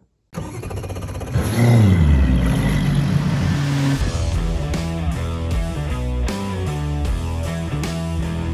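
An engine revs up and falls back in pitch. About four seconds in, rock music with a steady beat takes over.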